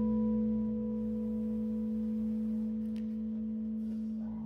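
A single electric guitar note held and left to sustain at one steady pitch, slowly dying away, with the rest of the band nearly silent under it.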